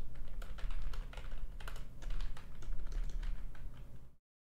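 Rapid, irregular typing clicks on a computer keyboard, over a low rumble.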